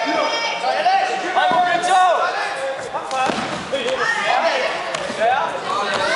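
Voices calling out loudly during a Kyokushin karate fight, with a few sharp thuds of strikes landing, about one and a half, two and three seconds in.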